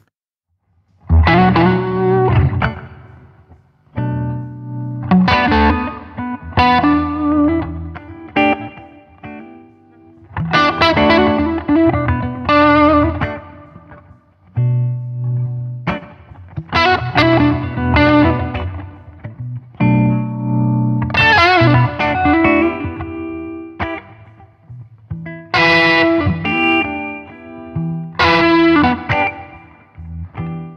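Two Gibson ES-335 semi-hollow electric guitars played together in a jam, one through a 50-watt overdrive amp modelled on the Fuchs ODS 50, the other through a handwired 1964 blackface Princeton Reverb. After a brief silence, chords and lead lines come in short phrases with gaps between them.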